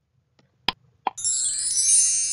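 Quiz countdown-timer sound effect: a last sharp tick, then about a second in a bright, high shimmering chime starts and rings on, signalling that time is up.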